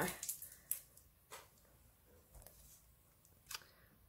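A few brief crinkles and taps of a cardstock sticker pack in its plastic sleeve being handled, about a second in and again near the end, with quiet between.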